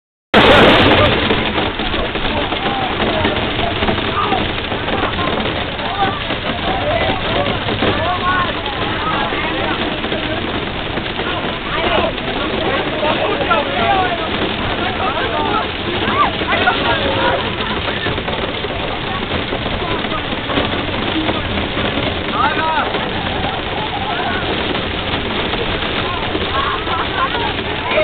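Heavy hail falling: a loud, steady, dense hiss of stones hitting the ground and shelter, with many people chattering and calling out over it.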